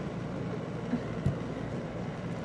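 Steady low hum and hiss of background room noise, with a faint knock a little over a second in.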